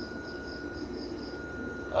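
Faint background chirping of insects: a high, pulsing chirp repeating about three to four times a second, over a faint steady high tone.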